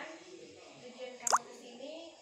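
A single short plop with a quick rising pitch, like a water drop, a little over a second in, over faint background voices.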